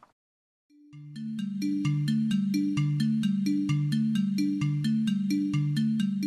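Background music for a broadcast holding slate, starting after a moment of silence: a short electronic phrase of three low notes, repeated about once a second.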